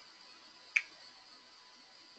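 A single short, sharp click about three quarters of a second in, over a faint steady hiss.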